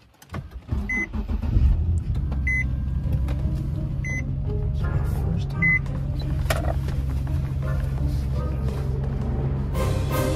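A car engine starting within the first two seconds and settling into a steady idle. A warning chime sounds four times, about a second and a half apart. Background music plays underneath.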